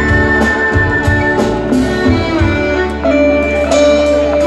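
Live band music from a stage, with drum kit, electric guitars and keyboards. A high note is held over low bass hits in the first half, which give way to a steady held bass note.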